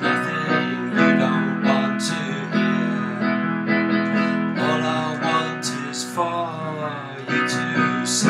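Digital piano playing a slow song arrangement: sustained chords re-struck about once a second under a melody line.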